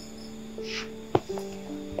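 Soft background music of sustained low held notes, with a single sharp click about a second in.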